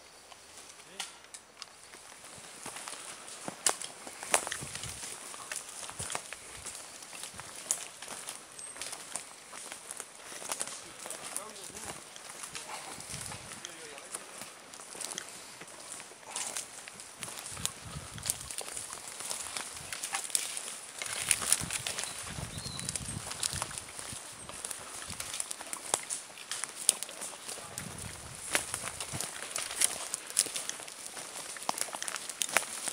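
Several people's footsteps crunching over dead branches and forest-floor litter, with frequent irregular snaps and cracks of twigs underfoot.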